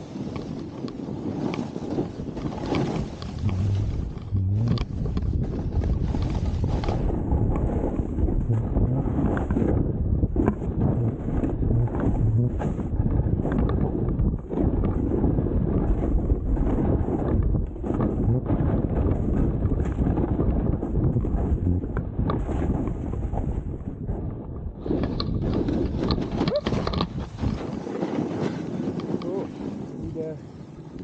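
Wind buffeting the camera's microphones: a loud, rough low rumble that keeps gusting, duller in the high end through the middle stretch.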